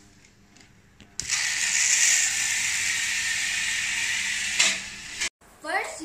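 A click, then the toy car kit's small battery-powered electric motor and its drive whirring steadily for about three and a half seconds, the sound dropping in level shortly before it cuts off.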